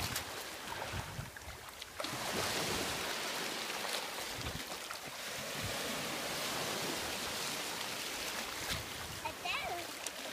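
Shallow surf washing over wet sand, a steady rushing wash that eases about a second in and swells again at two seconds. A young child's voice is heard briefly near the end.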